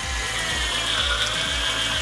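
Graphic-transition sound effect: a steady whirring buzz held for about two seconds over a background music beat.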